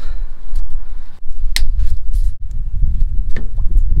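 A plastic cable tie snipped with side cutters: one sharp snap about one and a half seconds in, with a few lighter clicks around it, over a steady low rumble.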